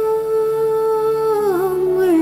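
A woman's voice holding one long steady note, then dipping down with a small wavering turn near the end, over soft sustained instrumental accompaniment.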